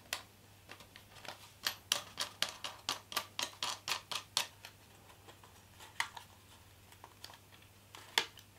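A quick run of light metallic clicks and ticks, about five a second for a few seconds, then a few scattered ones: thin steel beer-can sheet being handled and flexed by hand.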